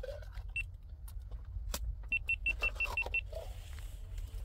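A quick run of seven short, high, identical electronic beeps about two seconds in, after a single beep near the start, over a steady low rumble. Scattered sharp clicks and scrapes are heard throughout.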